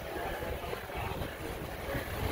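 Steady low rumble of workshop background noise, with no distinct single event standing out.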